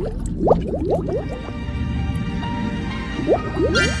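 Background music with a steady low bass, overlaid by quick, rising, watery bloop sound effects that come in a cluster in the first second and again shortly before the end.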